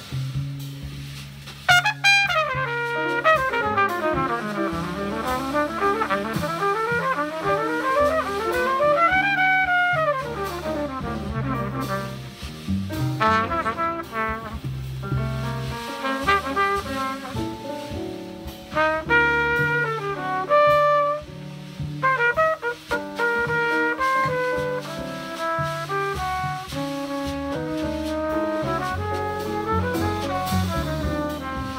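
Trumpet soloing in a slow jazz ballad, backed by upright bass, with fast runs sweeping up and down in pitch a few seconds in.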